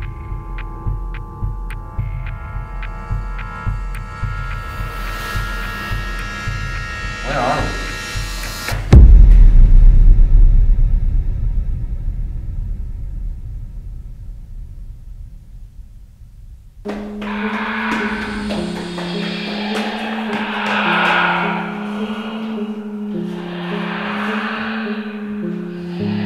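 Film soundtrack: a regular low pulse under sustained high tones that build for about nine seconds. Then a loud deep boom dies away slowly over several seconds. About seventeen seconds in, new music starts with a repeating bass figure.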